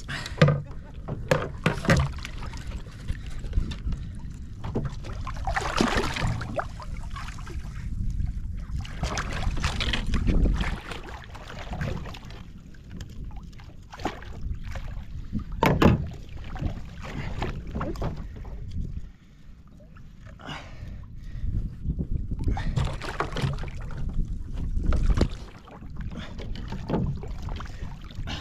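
Irregular splashing and knocks against a fishing kayak as a large yellowtail is fought at the side and the angler tries to gaff it; one sharp knock stands out about halfway through.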